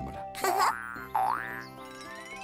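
Cartoon background music, with two comic sound effects over it: a loud whoosh about half a second in, and a boing-like swoop in pitch just after a second.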